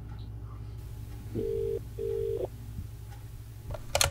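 Telephone ringback tone: two short rings at the same pitch in quick succession, about a second and a half in, as the dialled call rings unanswered. A brief click follows near the end.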